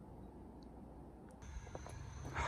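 Faint background noise with no distinct sound. About a second and a half in it changes abruptly to a slightly louder low steady hum with a thin high whine over it.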